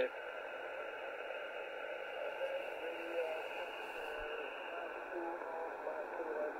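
Steady shortwave receiver hiss on an upper-sideband HF aeronautical channel, squeezed into a narrow voice-width band. A faint, weak voice breaks through the noise now and then from about halfway in.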